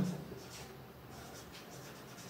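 A felt-tip marker writing on a whiteboard: a run of faint, short strokes of the tip rubbing across the board.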